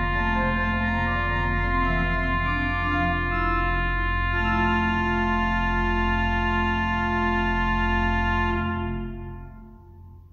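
Organ playing sustained chords. It moves through a few changes, then settles on a final held chord about four seconds in, which is released and dies away near the end.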